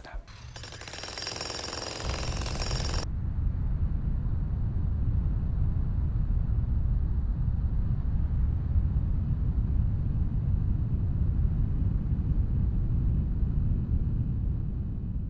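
A jackhammer hammering rapidly for about three seconds, then a steady low rumble of machinery.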